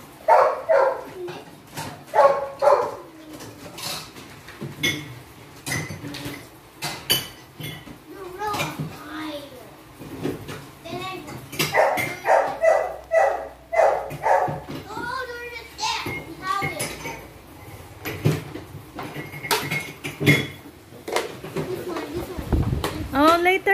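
Scattered clicks and clatter of hard plastic Hot Wheels Ultimate Garage parts being handled and fitted together, with people talking.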